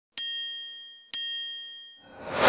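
Logo-animation sound effect: two identical bright, bell-like dings about a second apart, each ringing and fading away.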